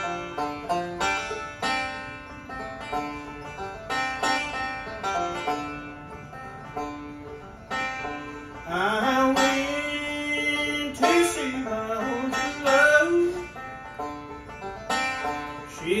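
Bluegrass band's instrumental break: banjo picking quick rolls over acoustic guitar rhythm. About halfway through, a lap-played resonator guitar (dobro) takes a louder sliding, bending lead, and the singing comes back right at the end.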